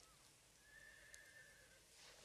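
Near silence, with a faint, distant horse whinny: one drawn-out call of about a second.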